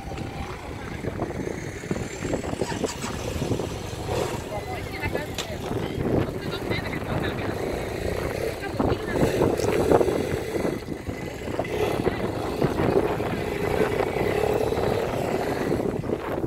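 Outdoor street ambience: indistinct chatter of people around, with a motor vehicle running nearby.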